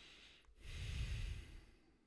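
A man's single long breath close to a microphone, starting about half a second in and lasting just over a second.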